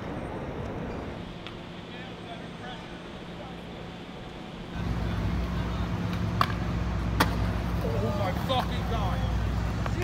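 Steady city street traffic noise, then a skateboard trick on a ledge with two sharp clacks of the board about a second apart, followed by people starting to shout and cheer.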